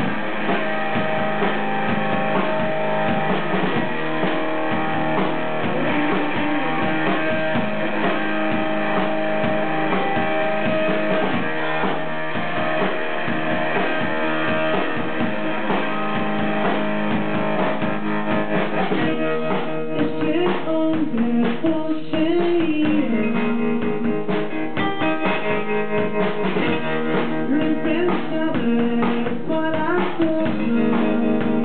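Rock band playing live: electric guitar and drum kit. The drums hit harder from about two-thirds of the way in, and a man sings into the microphone near the end. The sound is dull, with no high treble.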